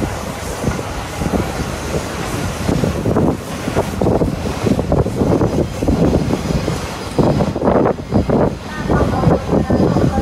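Steam locomotive working close by, making irregular steam exhaust and hissing as it gives off heavy smoke and steam.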